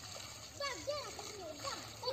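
Water splashing as a pan scoops and tips water out of a shallow pool. From about half a second in, children's high voices call out in short, rising-and-falling bursts over it.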